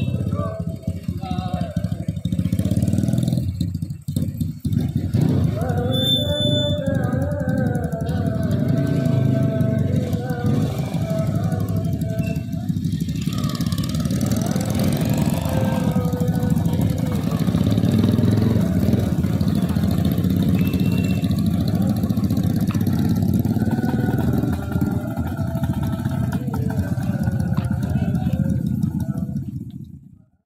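Motorcycle engines running at low revs as riders pull away, a steady rumble mixed with voices.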